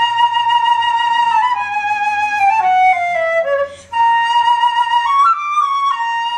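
Solo concert flute playing a held high note, then a descending stepwise run of about a dozen notes. After a short breath just before the four-second mark it returns to the held note, and near the end a brief rising turn leads back to it.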